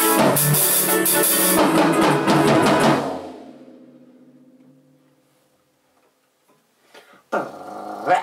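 Drum kit with kick, snare and cymbals played along to a recorded dance track, stopping about three seconds in. The track's last notes fade out over the next two seconds to near silence, and a man's voice comes in near the end.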